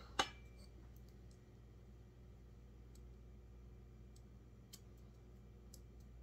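A single sharp click from handling the digital angle gauge on the chainsaw's crankshaft, then a quiet room with a low steady hum and a few faint ticks.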